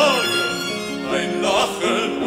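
A Schrammel ensemble playing a Viennese song. A held, wavering sung or violin note falls away right at the start, the accompaniment carries on, and about a second in a violin plays a short rising phrase with vibrato.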